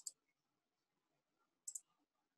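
Two computer mouse clicks, each a quick double tick of the button being pressed and released: one at the start and one near the end, against near silence.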